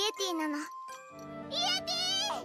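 Anime dialogue in Japanese over light background music: a character's voice at the start, then a child's high voice calling out a name over steady tinkling music in the second half.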